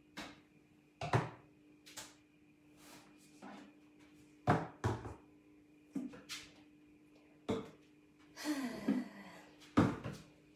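Household objects being handled and set down: a dozen or so scattered knocks and clicks, the loudest about a second in and around four and a half to five seconds in, over a faint steady hum. A longer rustling, scraping stretch comes near the end as the phone is picked up.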